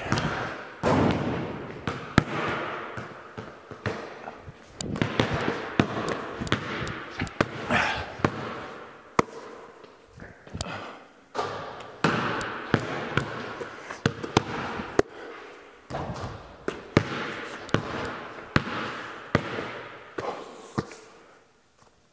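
Basketballs bouncing on a concrete floor and hitting the backboard and rim. There are many irregular sharp impacts, each echoing in a large, bare, metal-walled barn.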